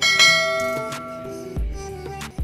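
A bell chime sound effect struck once, ringing out and fading over about a second and a half, over background music.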